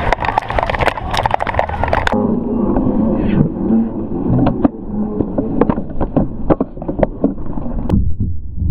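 Handling noise of a body-worn camera jostled while its wearer moves about: a rapid run of rubbing, knocks and clicks over street rumble. About two seconds in the sound abruptly turns duller and more muffled, with the knocks carrying on more sparsely.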